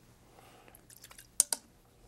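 A few faint taps, then two sharp clicks close together about a second and a half in.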